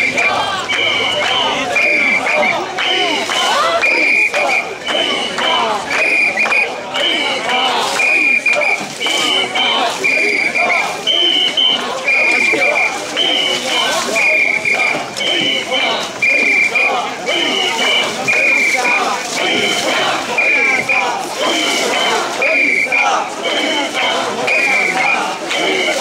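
Crowd of mikoshi bearers chanting "wasshoi, wasshoi" as they carry the shrine, over and over. A shrill whistle is blown in time with them in short two-note blasts, a little more than once a second.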